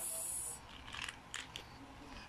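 A brief hiss, then faint scattered clicks and rustles of a child's hands handling a small red plastic toy container.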